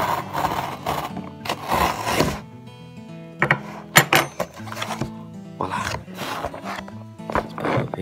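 Background music, over several short rasping scrapes of a kitchen knife slicing along the taped edge of a cardboard box, with a few sharp clicks about four seconds in.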